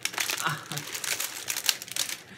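Crinkling of a clear plastic bag of peanut butter sandwich cookies as it is handled and moved about, a dense rustle of crackles throughout.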